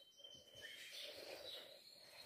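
Near silence: faint room tone with a thin high steady whine.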